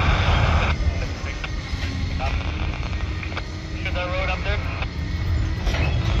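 Freight cars rolling slowly past on the rails with a steady low rumble, and wind buffeting the microphone. A brief burst of louder noise comes right at the start.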